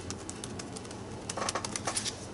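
Sponge dabbing acrylic paint through a plastic stencil onto a paper journal page: a run of soft, irregular taps and light clicks.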